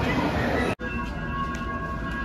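Steady city traffic noise. About three-quarters of a second in it cuts abruptly to the ambience of an enclosed bus station: a low rumble with several steady high whining tones, like a bus drivetrain or ventilation running.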